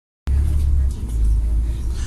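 Steady low rumble of a double-decker bus heard from inside on the upper deck: engine and road noise as the bus drives. It cuts in suddenly just after the start.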